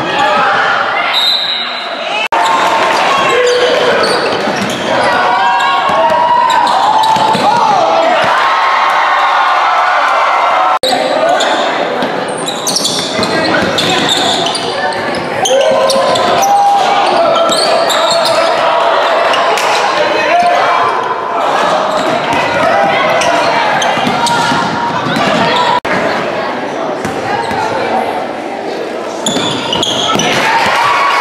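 Basketball game sounds echoing in a gymnasium: spectators' voices calling and shouting over one another throughout, with a basketball bouncing on the hardwood floor.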